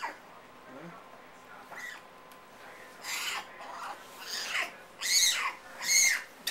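Canada lynx kittens mewing: a series of short, high calls that each fall in pitch, coming louder and closer together toward the end.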